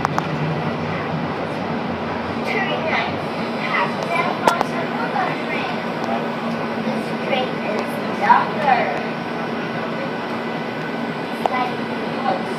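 Steady running noise inside a moving light rail car, an even rumble with a held low hum, under faint background voices. A single sharp click comes about four and a half seconds in.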